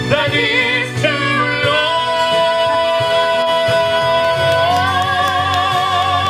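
A man and a woman singing a musical-theatre duet in long held notes, one note held steady for about three seconds before it opens into a wide vibrato near the end, with instrumental accompaniment underneath.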